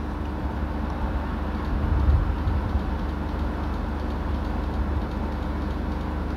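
Steady background room noise: a low rumble with a faint steady hum over it, swelling slightly about two seconds in.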